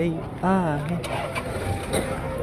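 A voice calling out a drawn-out, wavering "aa" about half a second in, over the steady low rumble of vehicle engines running.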